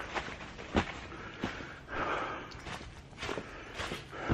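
Footsteps on a floor strewn with dry leaves and debris, about six steps at a walking pace, the loudest just under a second in.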